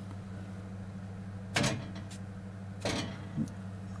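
Electric oven's rear convection fan motor running with a steady low hum. Two sharp clicks come about a second and a half in and near three seconds in.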